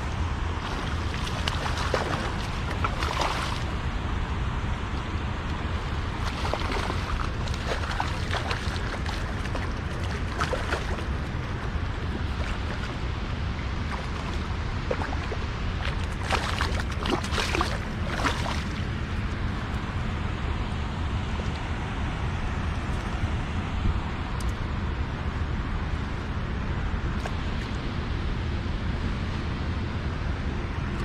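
Wind buffeting the microphone in a steady low rumble over lapping water, broken by bursts of splashing at the surface from a hooked striped bass being played, the longest run of splashes a little past halfway.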